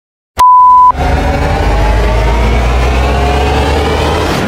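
A short, very loud steady beep about half a second in, then a deep rumble with a pitch that rises slowly and evenly over the next three seconds: an opening logo sound effect.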